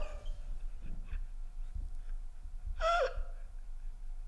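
Men laughing almost silently, with breathy gasps, and one short high falling squeak of a wheezing laugh about three seconds in.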